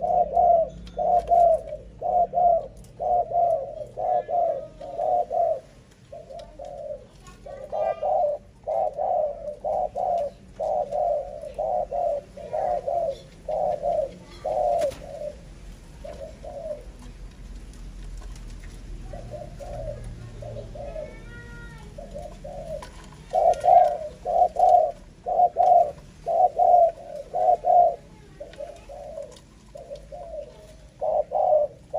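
Spotted doves cooing: a steady run of low, soft coo notes repeating about twice a second, thinning out and going quieter in the middle before resuming loudly later on.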